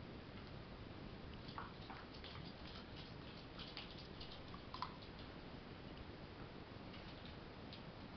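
Faint, scattered clicks of a dog's claws on a hardwood floor, over quiet room tone.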